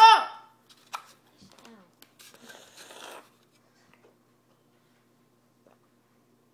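A child's voice cutting off in the first half-second, then a faint click, a few seconds of soft, faint handling noise, and near silence with a low hum for the last few seconds.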